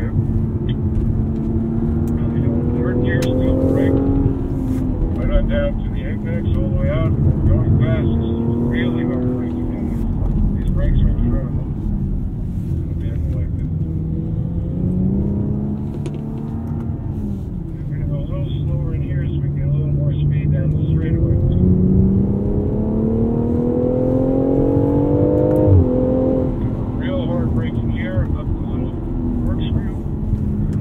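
BMW X4 M40i's turbocharged 3.0-litre inline-six heard from inside the cabin under hard driving in manual mode: the revs climb and fall repeatedly as the driver works between second and third gear. The longest pull comes late, with a rising engine note that drops sharply at an upshift about 26 seconds in.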